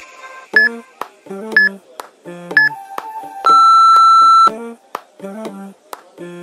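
Interval timer counting down: three short beeps a second apart, then one longer, lower beep of about a second that marks the start of the next work interval. The beeps sound over pop music.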